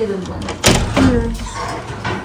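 Brief bits of conversation from people in the room, broken by one sudden knock or thud about two-thirds of a second in.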